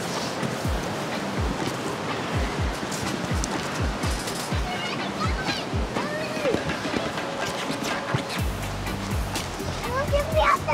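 Steady rush of a river, with the camera-holder's footsteps on a sandy dirt trail thudding about twice a second. Background music comes in about eight seconds in.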